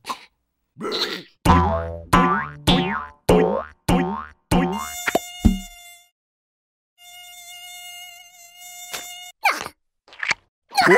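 Cartoon mosquito buzzing: a run of short buzzing passes, each falling in pitch, then a steady high whine that cuts off suddenly about nine seconds in.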